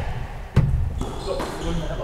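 A squash rally on a wooden-floored court: one sharp crack of the hard-hit ball about half a second in, among the players' footsteps.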